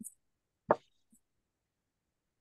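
A single short pop about two-thirds of a second in, with silence around it.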